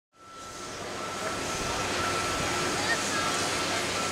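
Outdoor shipyard machinery noise during a heavy gantry-crane lift: a steady, even rumble and hiss with a continuous high tone running through it. The sound fades in just after the start.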